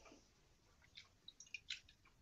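Near silence: room tone, with a few faint short ticks in the second second.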